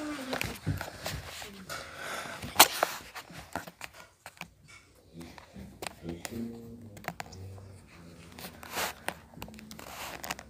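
Rustling, scraping and small knocks from a phone being handled close to the microphone, with faint muffled voices in the background, most noticeable in the second half.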